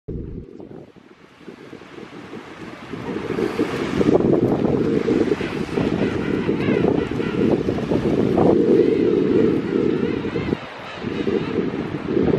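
Wind buffeting the microphone over surf on the beach, rising from about three seconds in into a steady low rumble.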